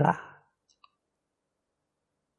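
A man's speech trailing off, then near silence with one faint click a little under a second in.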